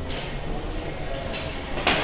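Steady low rumble with a few faint knocks, then one sharp knock near the end.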